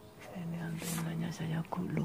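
A man's low voice, held at a fairly level pitch in three stretches without clear words, dropping in pitch at the end.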